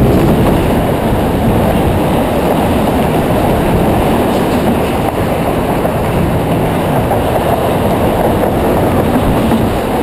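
Steady, loud rumble of wind buffeting the microphone of a camera mounted on a moving bicycle, mixed with the noise of car traffic on the roadway alongside.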